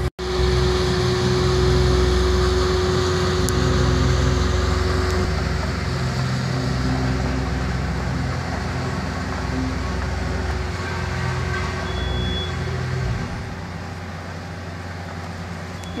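Ingersoll Rand DD-28HF double-drum road roller's diesel engine running steadily as the roller works along a dirt road bed, growing quieter near the end as it moves off.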